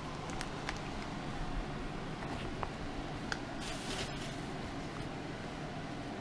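Rustling and a few light clicks of clothes and gear being handled and rolled on the floor, over a steady low room hum, with a short louder rustle about three and a half seconds in.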